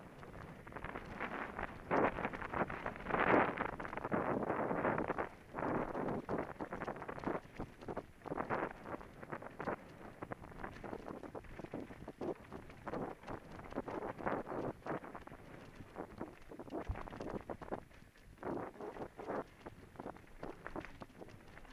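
Mountain bike riding fast down a rough dirt singletrack: tyres rolling over dirt, roots and stones with a dense, irregular clatter of knocks and rattles from the bike, and wind noise on the microphone. Busiest and loudest in the first few seconds, easing off later.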